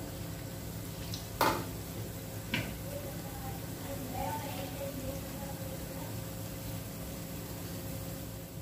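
Bread gulab jamun balls deep-frying in hot oil in a kadhai on medium flame: a steady sizzle of bubbling oil. Two sharp knocks come about a second and a half and two and a half seconds in.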